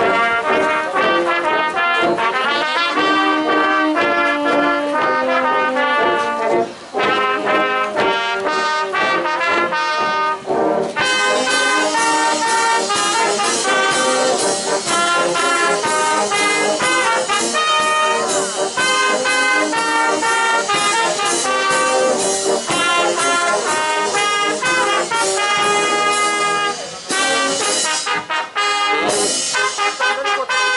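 Brass band playing, with trumpets and trombones carrying the tune. There is a brief pause about seven seconds in, and the band comes in fuller and brighter from about eleven seconds.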